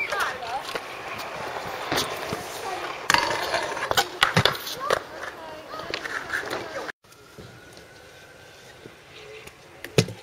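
Stunt scooter wheels rolling over skatepark concrete, with several sharp clacks of the scooter hitting the ground and voices in the background. The sound cuts off abruptly about two-thirds of the way through, and a quieter outdoor background follows.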